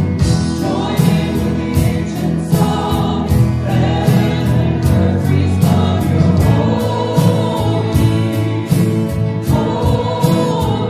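A contemporary worship song: a group of voices singing together over backing music with a steady beat.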